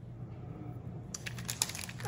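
Clear plastic packaging bags crinkling and crackling as the packs of chipboard pieces are handled, a few sharp crackles starting about a second in, over a faint steady hum.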